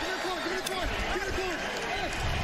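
Football players' voices close to a field microphone, a quick run of short calls as they celebrate a touchdown, with stadium crowd noise behind.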